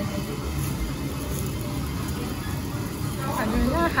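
Restaurant room noise: a steady hum and haze of background sound at an even level, with a person starting to speak near the end.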